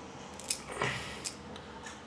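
A few faint clicks and taps of batteries and metal parts being handled while loading a small LED aluminium flashlight.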